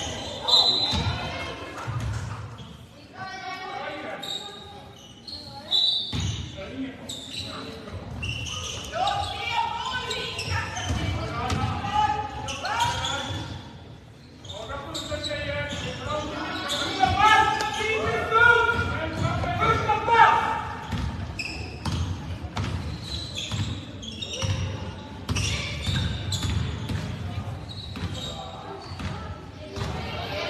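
A basketball bouncing on a wooden court floor during play, with repeated short thuds, echoing in a large sports hall. Voices call out over it, most busily in the middle of the stretch.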